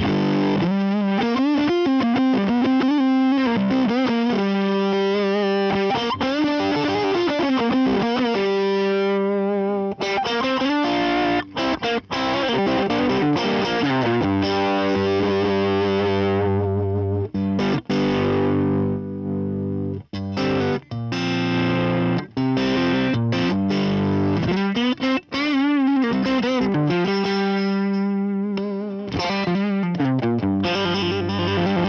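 Electric guitar played through the Fender Tone Master Pro's germanium Round Fuzz model: thick, fuzzy chords and riffs that thin to a cleaner tone with short gaps between phrases in the middle, then turn fully fuzzy again near the end. This is the volume-control cleanup a round fuzz is known for.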